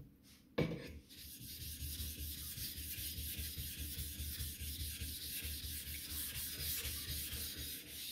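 A flat grey dressing plate scrubbed quickly back and forth over the wet surface of a Bester #1000 water stone, a steady run of gritty scraping strokes that starts with a knock about half a second in. It is clearing steel swarf that has loaded the stone's surface.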